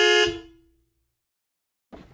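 A vehicle horn honk, one steady two-note blast that ends just after the start and fades out. Then the sound drops out to dead silence for about a second before faint background sound returns near the end.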